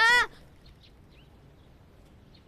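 A loud shouted call from a man breaks off a quarter second in, followed by faint, scattered bird chirps over quiet room ambience.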